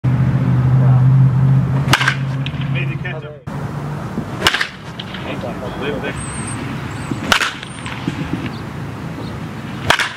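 Baseball bat striking pitched balls in a batting cage: four sharp cracks, two to three seconds apart. A steady low hum runs under the first crack and cuts off about three and a half seconds in.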